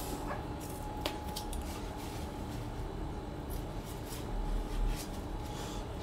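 Quiet handling noise from hands working at a chrome sink trap and a roll of repair tape: a few light clicks and soft rustles over a faint steady room hum.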